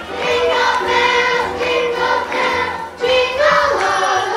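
A group of voices singing together, holding long notes, over instrumental music with a steady beat.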